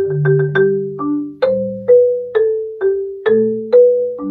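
Marimba played with soft yarn mallets: a slow line of single struck wooden-bar notes, about two a second, with lower bass notes ringing on beneath the higher ones.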